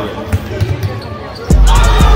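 Live gym sound of a basketball game: a few short thuds of the ball bouncing on the hardwood court under the voices of players and spectators. About one and a half seconds in, music with a heavy bass beat cuts in over it.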